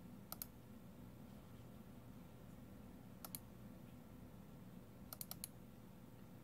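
Computer mouse button clicks: a double-click about half a second in, another double-click near the middle, and four quick clicks near the end, over a faint steady hum.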